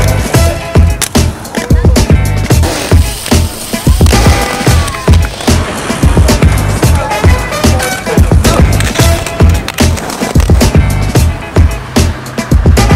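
Music with a steady beat and vocals, over the rolling rumble of roller-skate wheels on a concrete skatepark bowl.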